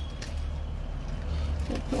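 Steady low background rumble, with a faint voice starting near the end.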